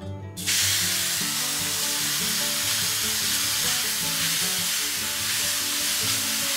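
Grated pumpkin sizzling in hot ghee in a pan. The sizzle starts suddenly about half a second in, as the pumpkin goes into the fat, and then holds steady.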